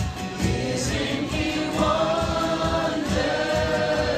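Live gospel worship song from a band: a male lead singer and backing voices sing long held notes over a steady low beat.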